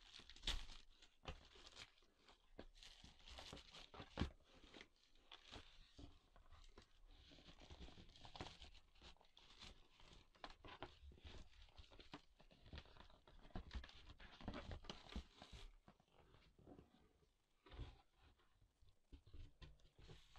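Faint crinkling and tearing of plastic shrink wrap being pulled off a cardboard product box, with irregular rustles and a few sharp clicks as the box is handled. The rustling thins out near the end.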